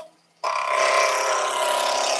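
Wood lathe running while a roughing gouge cuts a square spindle blank, a steady rasping cut with a hum of steady tones under it. The sound drops out for about half a second at the start.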